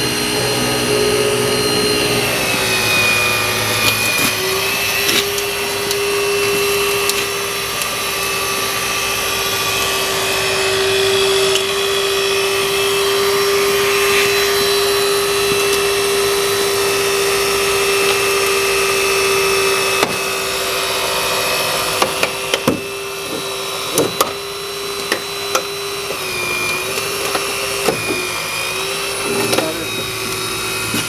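Battery-powered hydraulic rescue ram running with a steady motor whine as it pushes a car's dashboard up and forward. Over the last third the whine wavers and the metal and cribbing give sharp cracks and pops under the load.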